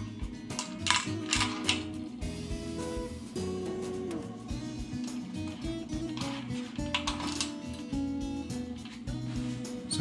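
Background acoustic guitar music, with a few light metallic clicks from small aluminium parts and clecos being handled about a second in and again around seven seconds.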